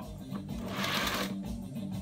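A soft rustling brush of hands rubbing over a fabric mat on the record cleaning machine's platter, lasting under a second about halfway in, over background music.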